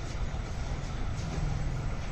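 Hand milking: faint, regular squirts of milk hitting a bucket about twice a second, over a steady low rumble.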